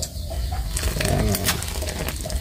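A large pot of field-crab broth at a rolling boil: a steady low rumble with crackling bubbles and small clicks as crab curd is skimmed from the surface with a metal ladle.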